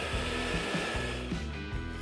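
Vacuum cleaner running steadily as its nozzle sucks up crumbs, over background music.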